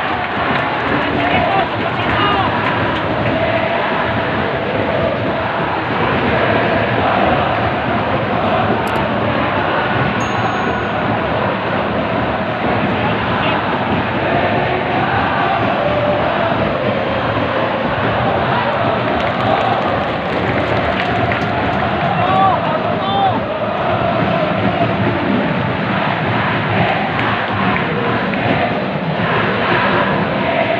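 Football stadium crowd: a steady din of many voices, with supporters singing and chanting together throughout.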